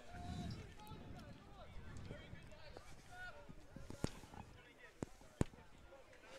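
Faint on-pitch field hockey play: distant players calling to each other, with a few sharp cracks of sticks striking the ball, the clearest about four seconds in and again after five seconds.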